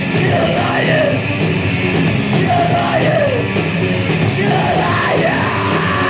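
Hardcore punk song from a 1983 demo tape: a loud full band with yelled vocals.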